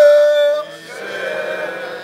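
A man's voice holds one long, loud call for about half a second. Several fainter voices then sound together for about a second and a half, like a group answering.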